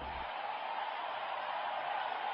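Steady background hiss in a pause between commentary, with no speech or other distinct event.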